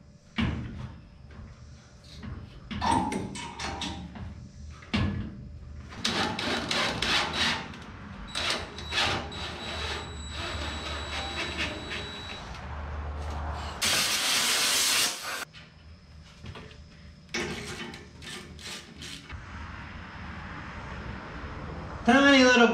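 Knocks and clatter of steel brackets and hand tools being handled, with a cordless drill running for a few seconds around the middle, drilling a hole in a truck bed mount. A loud hiss lasts about a second and a half just after it.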